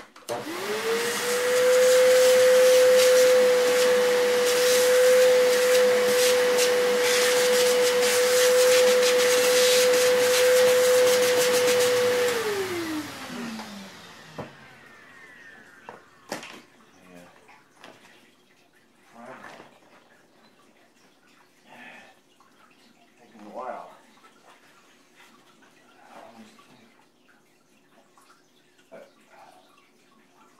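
A canister vacuum cleaner switched on, its motor rising at once to a loud, steady whine with many small clicks through the suction noise. About twelve seconds in it is switched off and winds down with a falling pitch, leaving only faint knocks and handling sounds.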